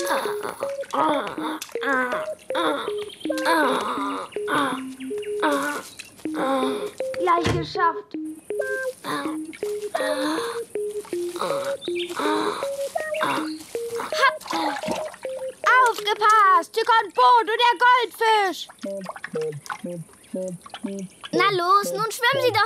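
Cartoon soundtrack: a bouncy tune of short stepped notes, with a single low thump about seven seconds in. High, bending voice-like sounds come loudly in the second half, without words.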